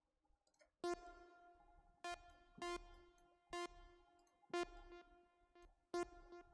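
A synthesizer line playing back quietly. One bright note is struck about six times in an uneven rhythm, each ringing and fading before the next, starting about a second in.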